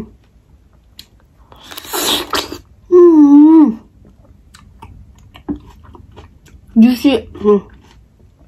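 A woman eating a juicy Japanese plum. A wet slurp comes about two seconds in, then a long, loud 'mmm' of enjoyment that rises and falls in pitch, and a shorter 'mm-hm' near the end, with soft chewing clicks between.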